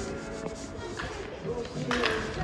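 Rubbing and scraping noise, like a handheld camera's microphone being brushed as it is carried, over faint background music. A sharp knock comes about a second in and a louder one near the end.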